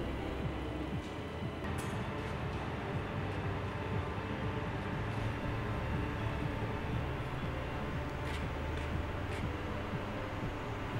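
Steady low industrial hum of a galvanising plant, with a few brief knocks about two seconds in and again near the end.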